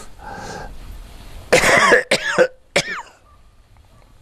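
A man coughing and clearing his throat: a breath in, then one loud harsh cough about a second and a half in, followed by two short ones.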